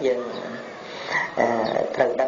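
A Buddhist monk's voice preaching in Khmer, two phrases with a short pause between them.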